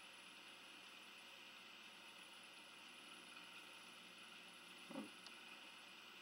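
Near silence: faint steady room hiss, with one brief soft sound about five seconds in.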